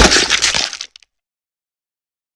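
Glass shattering: a sudden loud crash that dies away within about a second, with a couple of small clinks at the end.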